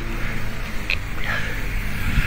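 Hunga Tonga–Hunga Ha'apai submarine volcano erupting, heard as a loud, steady low rumble without separate blasts.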